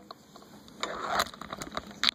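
Handling noise as the recording device is moved and laid down on a desk: a rustle and a few small clicks and knocks, starting a little under a second in.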